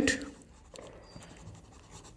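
Marker pen scratching faintly on paper in short strokes as a word is handwritten.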